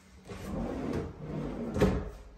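A kitchen cabinet drawer is slid open and pushed shut on its runners, with a sharp knock as it closes near the end.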